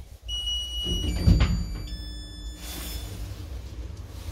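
Elevator arriving at a floor: an electronic arrival chime of three steady beeps, each lower in pitch than the one before. A sharp thump about a second in is the loudest sound, followed by the automatic car doors sliding open.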